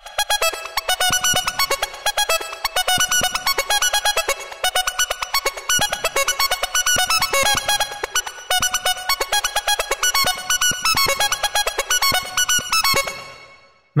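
A synthesizer playing a fast sixteenth-note riff in E major pentatonic, its notes and note lengths picked at random by a MIDI riff generator. It fades out near the end.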